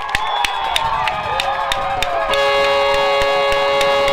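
Crowd voices and shouts with scattered sharp claps, then a little past halfway a stadium horn sounds one steady, loud blast of about two and a half seconds.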